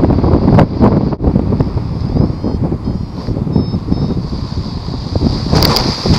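Wind buffeting a helmet-mounted camera microphone during a low paraglider flight in turbulent air, a loud uneven rumble. Near the end a few sharp scuffs and knocks as the pilot comes down into tussock grass.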